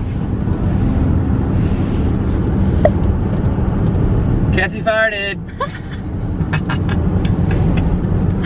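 Steady low road rumble inside a moving car's cabin, from tyres and engine at road speed. A brief high-pitched voice cuts in about five seconds in.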